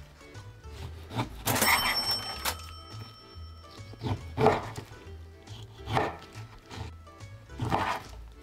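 A chef's knife slicing through a slab of lardo (cured pork back fat) and knocking against a wooden cutting board, several separate cuts, over background music.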